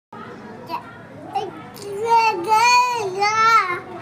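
A toddler's high-pitched voice: a few short soft sounds, then two long, wavering, drawn-out calls in the second half.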